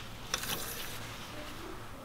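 Faint handling noise of an engine oil dipstick being pushed back into its tube and drawn out again to read the oil level, with a short click about a third of a second in. Quiet workshop room tone underneath.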